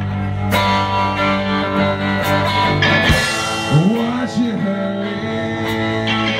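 A band playing an instrumental passage of a song, guitar to the fore over held chords.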